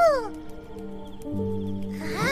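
A small cartoon creature's short call, its pitch rising and falling once, at the start, over background music whose low sustained notes come in partway through.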